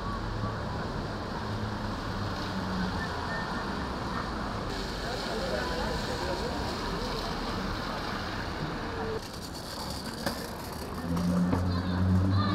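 Busy wet-street ambience: passers-by talking indistinctly and traffic on the wet road, with a vehicle engine growing louder near the end.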